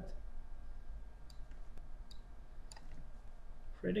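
A few sparse computer mouse clicks over a low steady hum.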